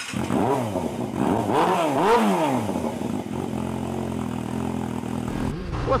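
Motorcycle engine revved up and down several times in quick succession, then running at a steady pitch through the second half.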